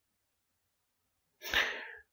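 Near silence, then near the end a single short, sharp breath noise from the narrator at the microphone, lasting about half a second.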